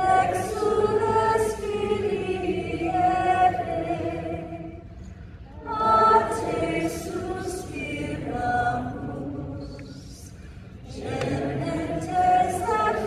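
A choir singing a hymn in sustained phrases, with short pauses about five seconds in and again near ten seconds.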